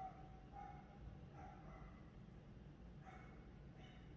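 Near silence: room tone with a low hum and a few faint, short pitched sounds.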